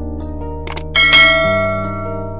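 Subscribe-button animation sound effect: short mouse clicks, then a bright notification-bell ding about a second in that rings out and fades. It plays over background music with sustained chords.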